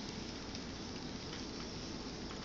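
A cat licking the inside of a stoneware crock pot insert: faint, irregular wet ticks of its tongue over a steady background hiss.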